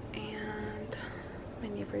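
A quiet, soft voice murmuring, with two short stretches of hushed speech.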